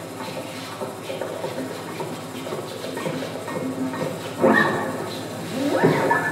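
Free-improvised live music from pedal steel guitar and electronics: a busy, scratchy texture of small clicks and held tones. A louder pitched swell breaks in about four and a half seconds in, and another comes near the end.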